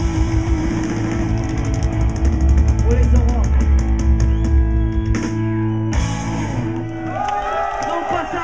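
Punk rock band playing live, ending a song: fast drum strokes over held distorted guitar chords for about five seconds, a break and one final hit about six seconds in. Then the crowd cheers and whoops as the chord rings out.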